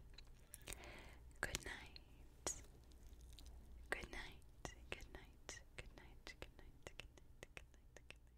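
Faint whispering, broken by many small, sharp clicks scattered irregularly throughout.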